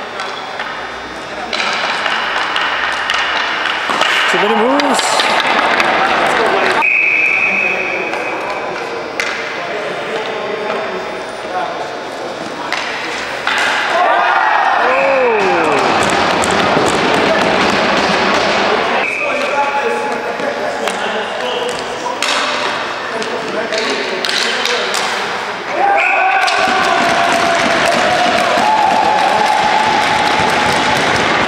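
Ball hockey game sounds: indistinct players' voices, with sticks and the ball knocking on the floor and boards. The sound changes abruptly every few seconds where clips are cut together.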